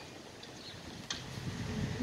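Faint, steady outdoor background noise in a pause between a speaker's phrases, with one small click about a second in.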